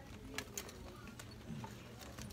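Faint scattered clicks and handling noise as fabric pencil cases are taken from and hung back on metal display hooks, over a steady low hum.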